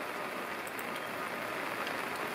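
Steady rain falling, an even hiss of rain that holds level throughout.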